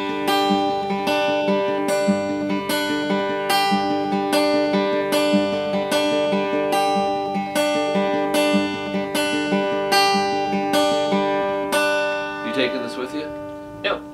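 Acoustic guitar fingerpicked in a steady, even arpeggio over a G major chord, thumb on the bass strings and fingers on the higher strings, the notes ringing into each other at about two a second. The picking thins out and stops near the end.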